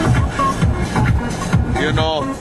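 Upbeat electronic dance music with a steady beat, playing on the van's stereo inside the cabin.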